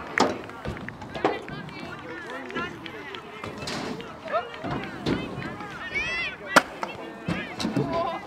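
Distant chatter of several voices, with a few sharp knocks of riders' wheels striking the skatepark ramps; the loudest knock comes about six and a half seconds in.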